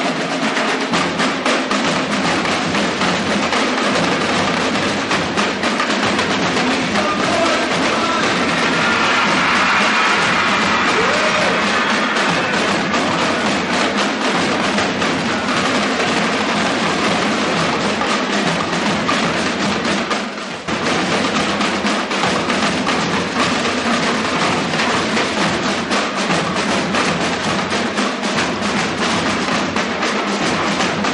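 School drumline of marching snare drums and tenor drums playing a fast cadence of rapid, dense strokes, with a brief break about twenty seconds in.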